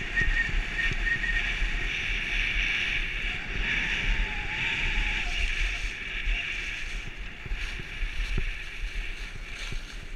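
Skis running over groomed snow, a steady hiss, with wind buffeting the head-mounted camera's microphone in gusty low rumbles.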